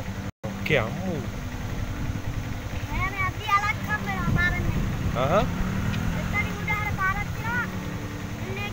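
People talking in short phrases over a steady low rumble, with a brief dropout in the audio just after the start.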